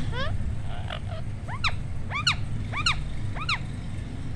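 Rose-ringed parakeet calling: a rising squawk at the start, then a run of four alike calls that each rise and fall in pitch, about two-thirds of a second apart, over a steady low hum.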